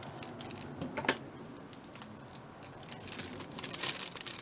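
Thin plastic craft packaging crinkling as it is handled: one short rustle about a second in, then a dense run of crinkles and small clicks near the end.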